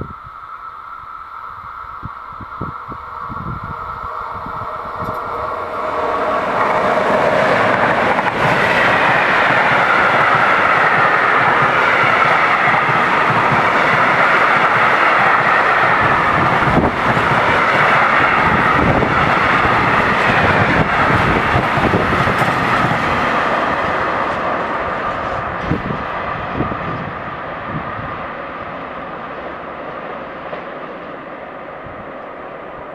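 Freight train of rail tank wagons passing: the rolling noise of steel wheels on the rails swells over the first few seconds, stays loud for about fifteen seconds, then fades as the train moves away. A steady high ringing runs through it.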